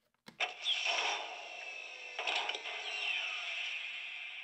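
A click as the button on the Despicable Me 4 Mega Transformation Chamber playset is pressed, then the toy's built-in speaker plays a mechanical-sounding electronic sound effect with a few falling tones, about five seconds long, which stops abruptly.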